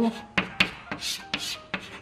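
Chalk on a chalkboard: a word being written in a handful of quick, sharp scratching strokes.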